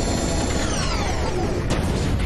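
Cartoon sci-fi sound effect of a roboticizer machine winding down: several whines falling in pitch over a mechanical whir as its chamber opens.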